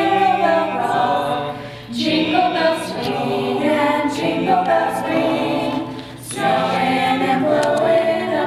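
Mixed-voice high school choir singing in harmony, in held phrases with two short breaks, about two seconds in and about six seconds in.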